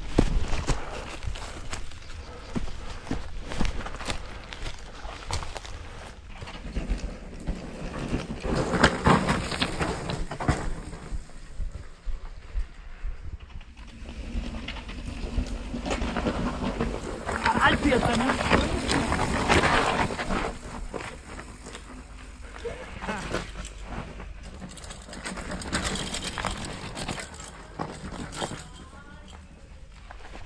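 People's voices calling out unclearly, loudest in two stretches about eight and eighteen seconds in, over scuffing and rustling close to the microphone.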